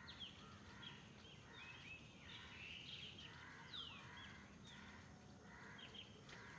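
Near silence with birds chirping faintly: scattered short calls and one quick falling note.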